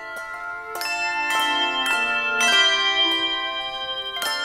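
Handbell choir playing: brass handbells struck in chords about every half second, each note ringing on under the next. The music swells louder toward the middle.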